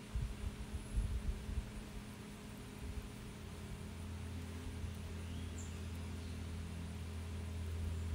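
A low steady hum, with a few soft low thumps in the first three seconds; the hum grows a little louder from about four seconds in.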